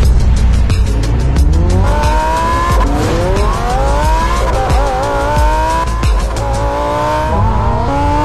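Lamborghini Huracán Evo's V10 engine revving hard as the car accelerates, its pitch climbing and then dropping back about four times through the gear changes, with music underneath.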